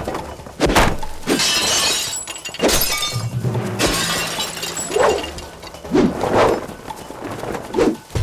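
Action-scene sound effects: a string of crashing, smashing impacts, with a burst of shattering and scattering debris about a second and a half in. A music score plays under it.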